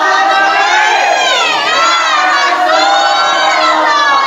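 Many boys' and men's voices chanting together loudly in one long, drawn-out unison call, the congregation's chanted response between units of Tarawih prayer.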